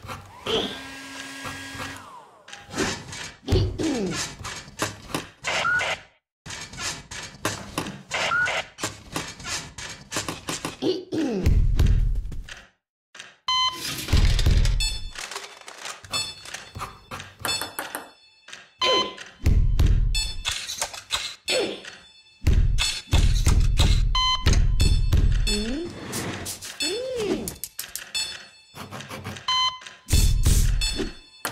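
A rhythmic musical piece built from everyday noises: rapid clicks and knocks, creaking glides, and from about a third of the way in, deep thuds with short electronic beeps from hospital equipment about every five seconds.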